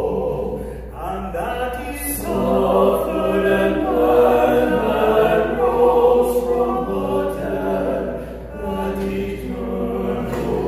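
Male vocal quartet singing together in held, sustained phrases, with a brief break about a second in and another near the end.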